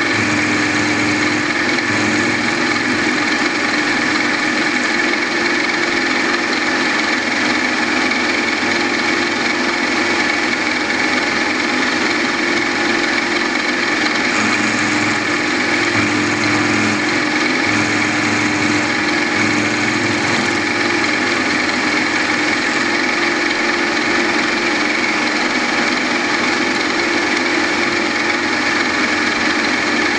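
A small milling machine spindle running steadily as a homemade hardened drill-rod gear cutter cuts helical teeth into a 12L14 leaded-steel gear blank, with a steady whine held throughout.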